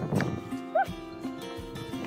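Background music with held notes and a short rising-and-falling sound a little under a second in.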